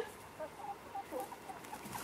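Backyard hens softly clucking, with short, faint calls scattered throughout.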